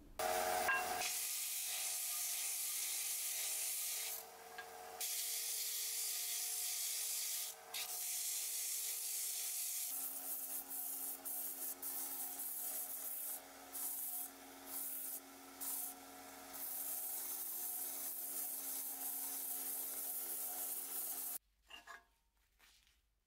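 Electric sanders grinding hardwood: first a small bench disc sander, then a narrow belt sander rounding a wooden handle. Each is a steady motor hum under the hiss of abrasive on wood, which drops out briefly several times as the wood is lifted away. The sound cuts off suddenly near the end.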